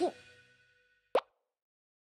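A single short water-drop 'plop' sound effect for a cartoon teardrop, about a second in. The music's last note falls away at the start, and otherwise it is silent.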